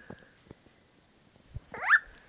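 A baby gives one short, loud squeal that rises sharply in pitch near the end, after a near-quiet stretch with a few faint clicks.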